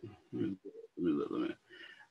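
A man's low, muttered voice in a handful of short, indistinct syllables, with no clear words.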